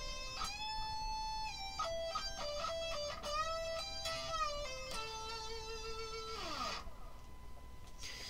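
Electric guitar playing a slow lead phrase of held notes with string bends, the pitch rising into several of the notes. About six and a half seconds in, a held note slides down in pitch and the playing stops.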